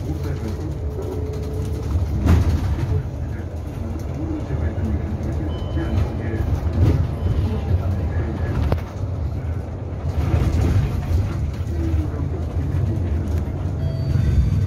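Ride noise inside a low-floor electric city bus under way: a steady low rumble from the tyres, road and suspension, with a sharp knock or rattle about two seconds in and another near nine seconds.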